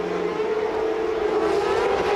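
Racing car engine at high revs, a steady high note that bends slightly in pitch near the end.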